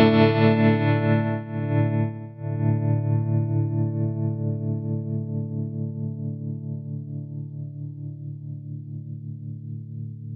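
Electric guitar chord through a TC Electronic Plethora X3 multi-effects pedalboard, struck again about two seconds in and left to ring and slowly fade, its volume wavering in a steady pulse from a modulation effect.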